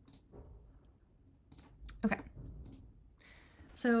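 A few faint computer mouse clicks, with a short hummed voice sound about two seconds in and a spoken word starting near the end.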